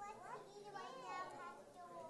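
Faint background chatter of children's voices and murmured talk, with no clear words.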